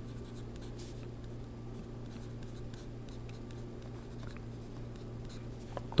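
Yellow wooden pencil writing on a sheet of paper: faint, irregular short scratches as letters and symbols are stroked out, over a steady low hum.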